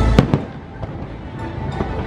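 Fireworks bursting over the show's soundtrack music: two sharp reports close together near the start, then scattered pops and crackle.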